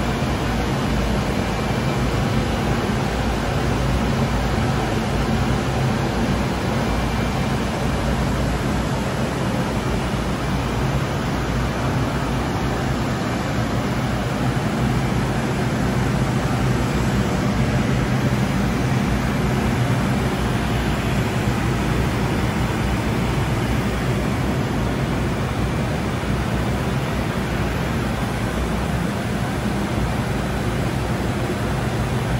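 Bürkle LFC 1600 roll-to-roll UV roller coating line running: a steady, even machine noise with a low hum underneath, the line feeding film at five linear meters per minute.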